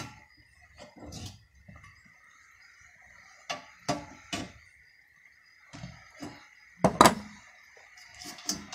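Pliers clicking and knocking against the metal frame and tabs of a fan being taken apart for scrap. There are a few scattered sharp clicks, the loudest near the end, over a faint steady high whine.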